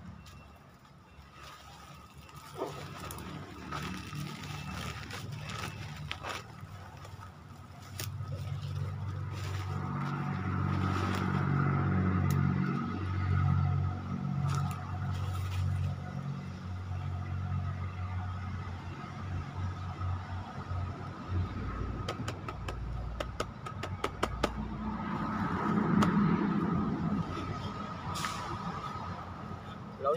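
Handling of a wire-mesh snake trap and plastic sacks, with scraping and clicks, over the low hum of an engine that swells twice as a vehicle passes.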